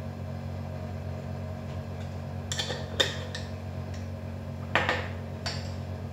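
A teaspoon clinking and tapping against a cinnamon jar and a ceramic bowl as ground cinnamon is spooned into a bowl of egg and milk. There are a few sharp clinks about two and a half to three seconds in, the loudest at three seconds, and two more near the end, over a steady low hum.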